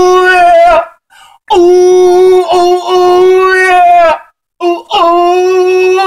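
A man singing loud, long held notes into a microphone in a high voice: three sustained notes at nearly the same pitch, with short breaths between them.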